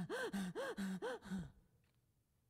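A woman's voice making a quick run of about five short, breathy gasps, each rising and falling in pitch, acting out tense anxiety, then near silence for the last half second.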